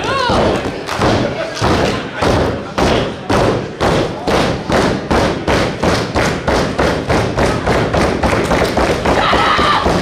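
A long run of rhythmic thumps in unison that speeds up from about two to about four a second: crowd stomping in time to rally a wrestler caught in a hold. A few voices shout over it.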